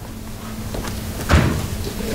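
Hands and Bible pages moving on a wooden lectern: a rustle that grows louder, then a single knock about one and a half seconds in.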